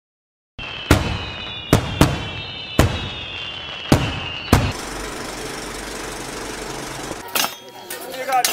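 Fireworks going off: six sharp bangs over about four seconds, with high whistles running under them, then a steady hiss.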